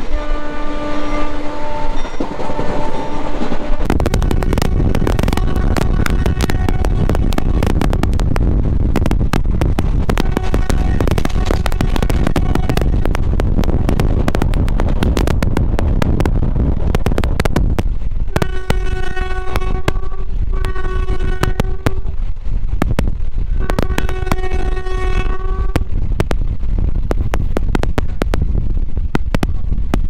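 Express train running at speed, heard from its open door: a loud steady rush of wind and rolling wheels that jumps up about four seconds in, with the wheels clicking over rail joints. The train horn sounds three blasts about two-thirds of the way through, after fainter horn tones in the first few seconds.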